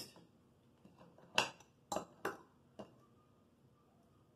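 A metal fork clinking against a dish four times in about a second and a half while a piece of food is speared and lifted.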